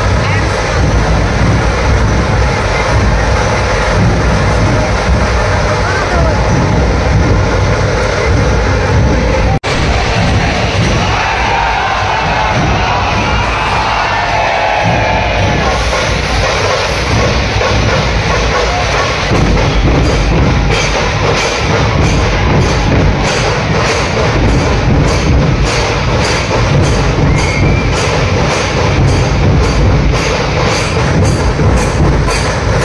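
Loud procession music with drumming over a packed, cheering crowd, with a momentary drop-out about a third of the way in. From about two-thirds in, a steady drum beat of roughly two to three strikes a second stands out.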